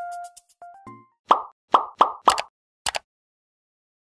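Tail of an electronic outro jingle: a last keyboard note fades out, then four quick pop sound effects in a row and a final click, and the sound cuts off about three seconds in.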